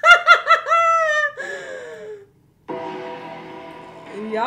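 A woman laughing loudly: four quick, high-pitched bursts of laughter, then a long, falling, trailing-off note.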